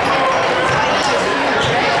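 A basketball bounced on a hardwood gym floor, twice about a second apart, as a player dribbles at the free-throw line. Steady crowd chatter echoes through the gym behind it.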